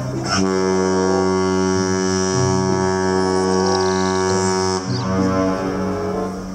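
A ship's horn sounding one long, steady blast that starts just after the beginning and stops a little over a second before the end, over background music.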